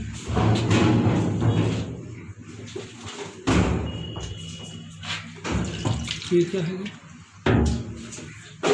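Men's voices talking over background music, with two knocks about four seconds apart.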